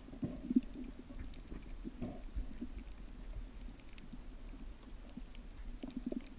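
Underwater sound heard through a GoPro housing: a low, muffled rumble of water movement with scattered sharp clicks and ticks from the reef, and one louder thump about half a second in.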